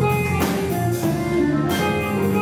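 Live jazz band: an electric guitar plays a run of notes over a drum kit keeping a steady beat with cymbal hits and an electric bass line underneath.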